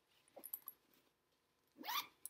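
A house cat gives a short rising meow near the end, after a few light clicks and knocks about half a second in.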